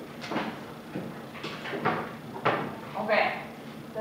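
Dry-erase marker writing on a whiteboard: a handful of short, scratchy strokes, with a brief voice in the room about three seconds in.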